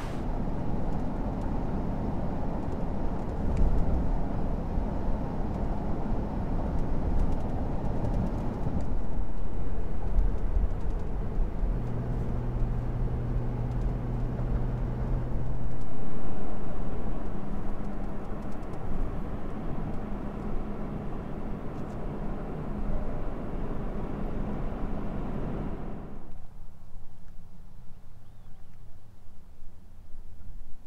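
Toyota 4Runner driving on a highway, heard from inside the cabin: a steady drone of engine and tyre noise with a low hum. About four seconds before the end the higher part of the noise drops away, leaving only a low rumble.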